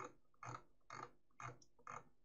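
Four faint, short clicks at the computer, about half a second apart, as the shared document is moved on to the next photo.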